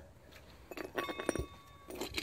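Metal tools and bolts clinking against each other as they are rummaged through and picked up from a pile on the ground, with a struck piece ringing briefly about a second in.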